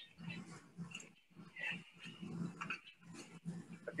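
Faint, irregular metal clicks and knocks as the hinged manway lid of a copper pot still is swung shut and sealed.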